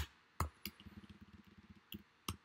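Keys being typed on a computer keyboard: a few sharp, irregular clicks, one right at the start, two within the first second and one near the end.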